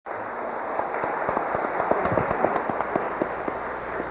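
Studio audience applauding: many hands clapping in a dense, even patter.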